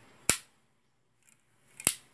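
Kangaro TS-610R staple gun's handle lock being released: two sharp metal clicks about a second and a half apart as the locked handle is pressed, pushed forward and springs open.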